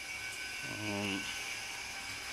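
Steady hum of a running motor with a faint high whine, over an even hiss.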